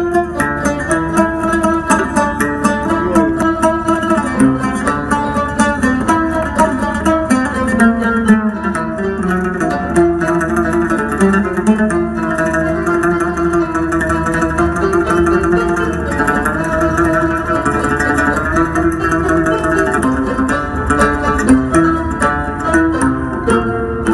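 Qanun and oud playing together: a continuous run of quick plucked notes from the zither's many strings over the lute's plucked melody.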